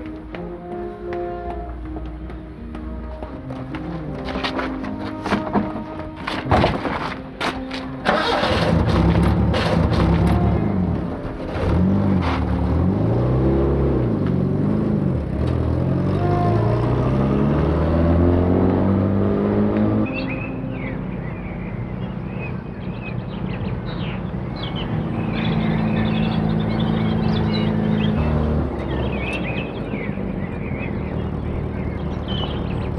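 Background music. About eight seconds in, an old pickup truck's engine comes in loud, its pitch rising and falling as it revs up and down and pulls away. A steadier hum follows near the end.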